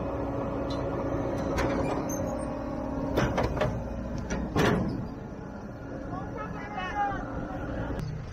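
A tractor and John Deere 530 round baler running with a steady hum, which drops away just after three seconds. The baler's tailgate lifts to let the round bale out, with a run of clanks and knocks about three to five seconds in, the loudest near the middle.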